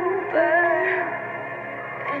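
Slow pop ballad: a singing voice holds and slides between notes over sustained accompaniment chords, easing off in the second half.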